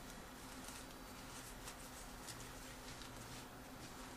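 Faint scratchy rubbing of a squeegee and fingers working a wet protective film onto an iPod touch, in short repeated strokes, over a low steady hum.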